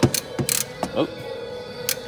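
A few irregular clicks of a ratchet wrench being worked on the castle nut of a car's outer tie rod end.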